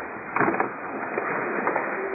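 Rustling and scattered knocks of a church congregation stirring, over a steady hiss.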